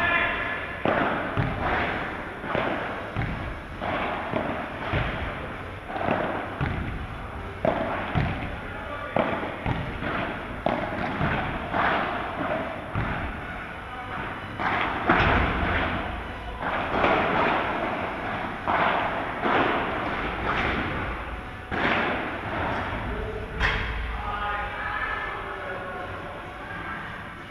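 Padel balls being hit with paddles and bouncing off the court and its glass walls: a steady run of sharp hits about once a second, ringing in a large hall, with voices in between.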